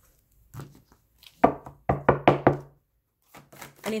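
A handful of sharp knocks in quick succession on a tarot deck around the middle, then the cards being shuffled by hand near the end, a rapid patter of card clicks.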